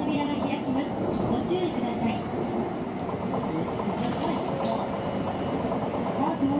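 Rubber-tyred automated New Tram car running slowly through an underground station approach, heard from inside the car, with voices over the running noise.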